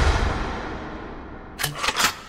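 Edited-in sound effects: a deep boom fading out over about a second and a half, then a few sharp clicks near the end.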